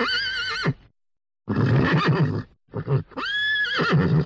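A horse whinnying: three calls, the first and last high and wavering.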